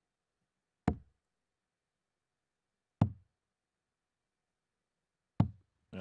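Three steel-tip darts striking a Winmau Blade 6 bristle dartboard, each a single sharp thud: one about a second in, one about three seconds in, the last near the end.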